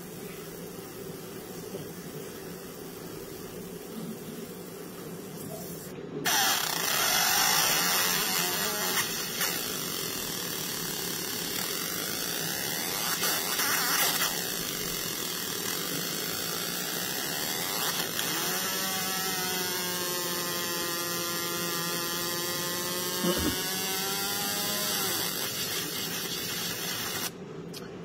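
Laser marking machine engraving a metal dog tag: a steady low hum, then about six seconds in a loud, even buzzing hiss as the beam marks the tag, its pitch sweeping slowly as the scan moves, cutting off sharply just before the end.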